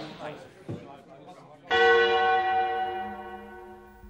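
A deep bell struck once, nearly two seconds in, its tone ringing on and slowly fading: the chime that marks time passing as the hourglass turns.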